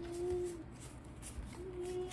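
A person humming a held note at the start, and a second held note starting near the end, over faint clicks of trading cards being handled.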